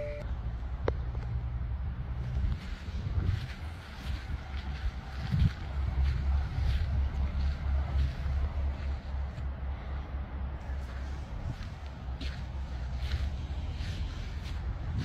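Wind buffeting the phone's microphone in a steady low rumble, with footsteps on dirt and gravel. A car's door-open chime cuts off at the very start.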